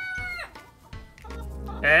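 The end of a rooster's crow: a long held note that bends down and stops about half a second in.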